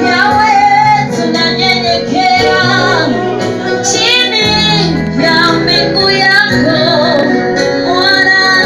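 Church worship team singing through microphones, a woman's voice leading, over held backing notes that change every second or two.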